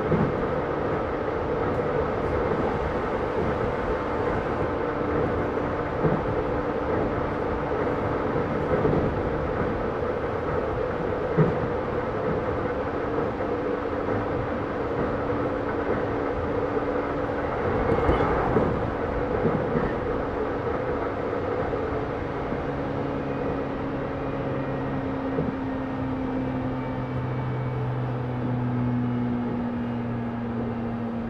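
JR East E131-600 series electric train heard from inside the motor car while running: steady rolling and traction noise with occasional knocks from the rails and a brief swell about 18 s in. Low motor tones come in during the last several seconds and fall slightly in pitch as the train slows.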